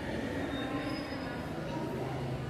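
Long wooden ruler scraping against a chalkboard as it is slid into a new slanted position: a continuous rubbing noise with faint thin squeaks.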